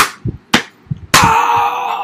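Sharp smacks of objects being struck together in a mock fight, about two a second, then a little past a second in a loud held sound with a steady pitch that slowly fades.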